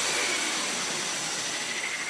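A steady hiss that slowly fades, with a faint thin high tone running through it: a noise wash in the edited soundtrack, left where one piece of electronic music has just ended.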